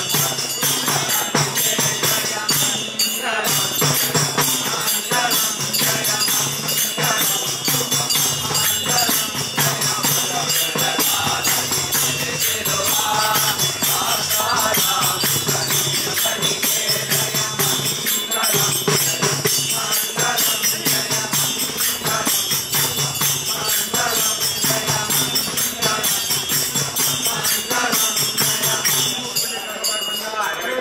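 A group of men chanting a devotional bhajan together, accompanied by a hand-held frame drum and small hand cymbals clashing in a steady, even rhythm.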